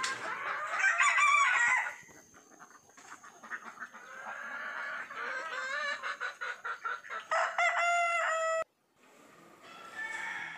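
A rooster crows about a second in and again near the end, with chickens clucking in between. The second crow cuts off abruptly.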